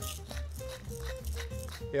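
A hand-held salt mill being twisted, giving a run of quick, irregular grinding clicks, over background acoustic guitar music.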